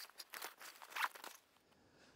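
Fabric backpack being handled: soft rustling and a few light clicks, which stop about one and a half seconds in.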